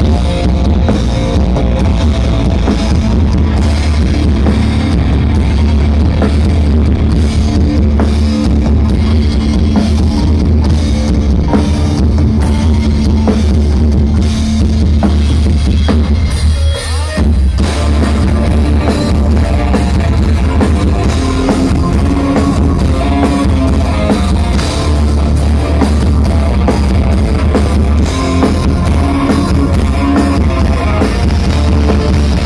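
Live rock band playing loud through a festival PA: drum kit and electric guitar over heavy bass, with a brief break in the sound a little past halfway.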